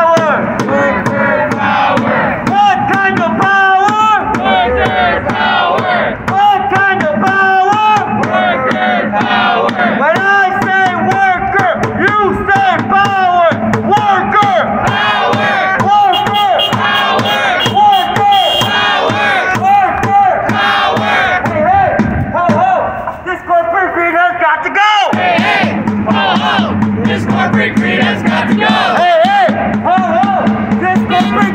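Protest crowd chanting slogans in a steady rhythm, led by a voice through a megaphone.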